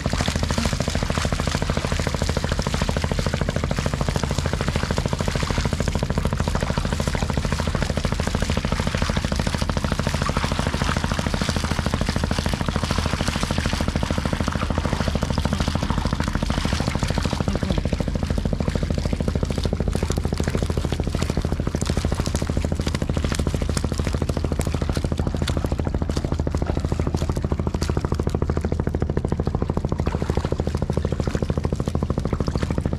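An engine running steadily at an even pace, with a light crackle over it.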